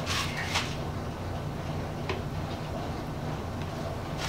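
Paintbrush scraping against a plastic paint bucket and its pour spout as paint is worked out: a few short scrapes in the first half-second and one more about two seconds in, over a steady low hum.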